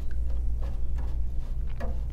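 Steady low electrical hum with a few faint, soft knocks as splint material is handled at a water-filled splint pan.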